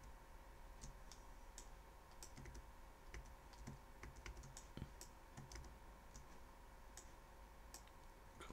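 Faint, irregular clicks of a computer keyboard and mouse, a dozen or so scattered through, over a faint steady hum.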